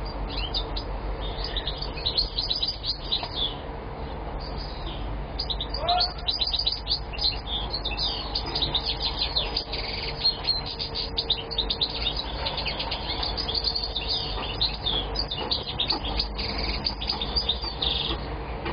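Moroccan goldfinch (European goldfinch) singing a continuous, fast song of twittering chirps and trills, over a faint steady hum.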